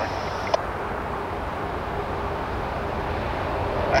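Union Pacific freight train's diesel locomotives approaching, a steady low rumble with a faint hum that grows slightly louder near the end. About half a second in, a short click as the scanner radio's transmission cuts off.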